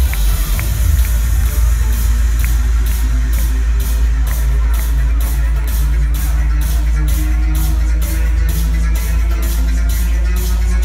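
Electronic dance music played loud over a festival PA from a DJ set, heard from within the crowd: a heavy, steady bass with a regular beat, and sharp cymbal-like hits about twice a second coming in about two seconds in.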